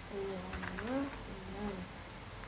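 A person humming a few low notes, one gliding upward about a second in, with a few faint clicks of small objects being handled.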